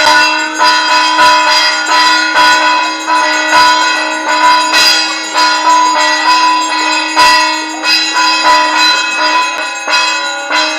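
Temple bells struck over and over, about three strikes every two seconds, their metallic ringing overlapping over a steady low hum, as during an aarti.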